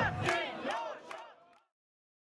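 Concert crowd cheering and shouting, many voices overlapping, fading away to nothing about a second and a half in.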